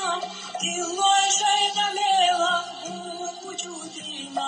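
A recording of an old Chechen song playing: a voice singing a wavering melody over music.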